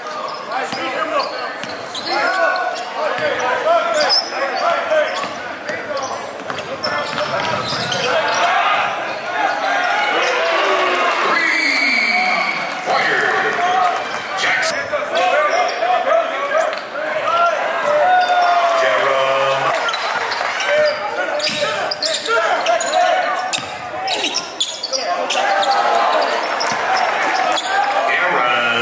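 Basketball dribbled on a hardwood court in a large gym, the bounces repeating all through, under a continuous mix of voices from players and spectators.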